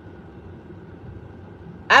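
Low, steady hum inside a parked car's cabin, with the woman's voice starting again at the very end.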